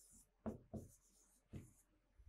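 Faint, short scrapes of a pen writing on a board, three strokes spaced out over a near-silent pause.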